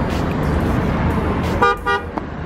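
Steady street traffic rumble, then a car horn honks briefly near the end.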